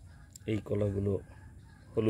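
A chicken clucking: a short note followed by a longer pitched call about half a second in, and the next call beginning at the very end.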